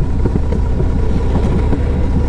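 Yamaha Road Star 1700's air-cooled V-twin engine running steadily at cruising speed, heard from the rider's seat while under way, with a deep, even exhaust note.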